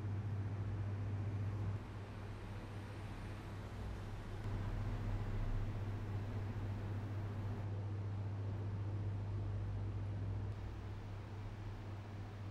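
Room tone dominated by ceiling air-conditioning noise: a steady low hum with a hiss above it. Its loudness and brightness step a few times as the playback switches from one microphone to another.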